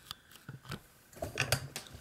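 A few faint, scattered light clicks and small taps.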